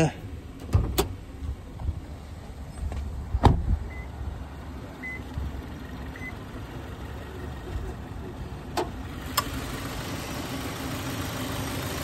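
Subaru Forester XT's turbocharged flat-four idling while the hood is released and raised: a few sharp clacks and knocks from the latch and hood, the loudest about three and a half seconds in. The engine grows a little louder in the last few seconds as the hood comes up.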